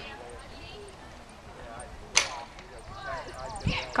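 Faint, distant shouted voice calls from the agility field, with one sharp knock a little past halfway through.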